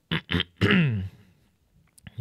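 A man's brief non-speech vocal sounds: two short sharp bursts like throat clearing, then a drawn-out hesitation 'uh' falling in pitch.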